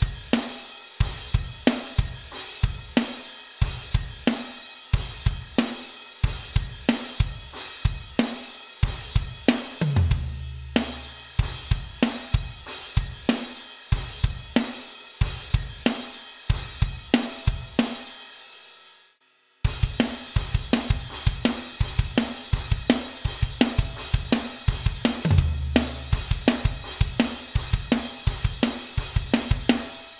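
Electronic drum kit playing an up-tempo pop-punk chorus groove: kick and snare under steady hi-hats. The pattern stops dead for about a second after the first pass, then is played through again. Each pass has a low drum hit ringing on about halfway through.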